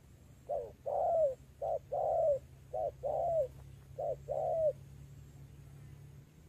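Spotted dove cooing: four two-note phrases, each a short coo followed by a longer coo that falls away at the end, at an even pace. This cooing is what marks a wild-caught dove as fit to serve as a decoy.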